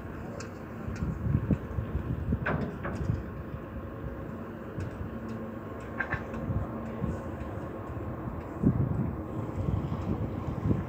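Wind buffeting the microphone in uneven gusts over the steady hum of a loaded inland cargo ship's engine, with a few light clicks.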